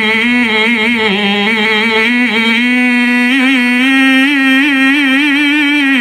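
Male qari's solo Quran recitation in the melodic tilawah style, amplified through a handheld microphone. He holds one long drawn-out vowel through the whole passage, decorated with rapid wavering ornaments and small steps in pitch.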